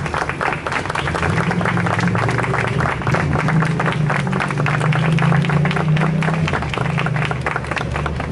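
Audience applauding: many hands clapping densely and steadily, thinning slightly near the end, over a steady low hum.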